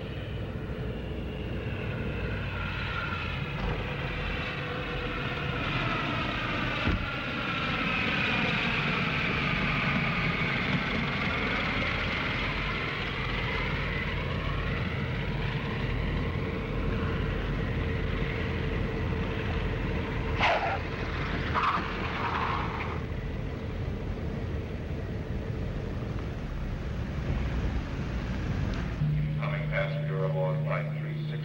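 Propeller airliner's piston engines droning through the landing approach and rollout, the engine note sinking in pitch and rising again in the first half. A few brief sharp sounds come about twenty seconds in, after touchdown.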